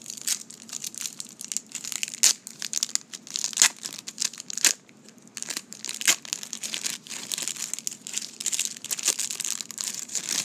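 Wrapper of a 1990 Score football card pack crinkling and tearing as it is pulled open by hand, with a few sharp snaps in the first half.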